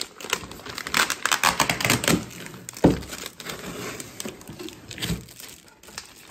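Clear plastic bag crinkling and rustling as it is handled and lifted out of a cardboard box, with a sharp knock about three seconds in and a softer one near the end.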